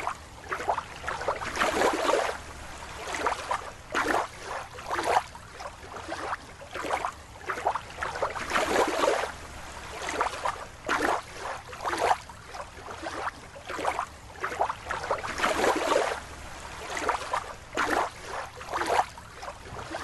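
Water sloshing and splashing in irregular swishes, about one or two a second.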